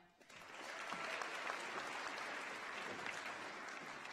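Audience applause, building over the first half-second, holding steady, then thinning out near the end.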